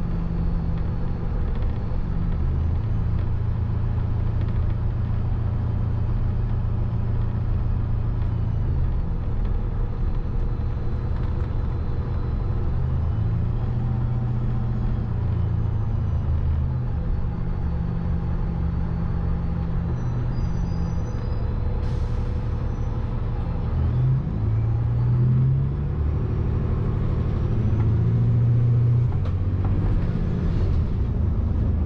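City bus engine and drivetrain running, heard from inside the passenger cabin as the bus moves: a low drone that steps up and down in pitch several times. A brief sharp noise comes about 22 seconds in.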